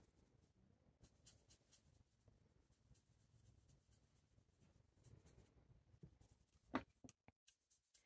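Faint, soft scratching of a watercolour brush swirling paint on a ceramic palette, with one short click near the end.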